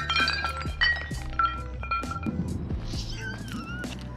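A plate smashing on rock, its shards clinking and ringing in the first second, over background music with a steady beat. A yell about three seconds in.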